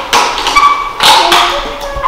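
Plastic pony beads clicking and tapping as they are picked through by hand, in two clusters about a second apart.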